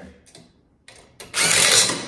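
A DeWalt cordless driver fitted with a socket runs in two goes, tightening a bolt on the stand's metal frame: a short burst about a second in, then a louder run of under a second near the end.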